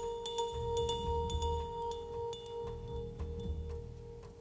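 Vibraphone played softly with yarn mallets: one long note rings on throughout, and a few light strikes add brief higher ringing tones over it.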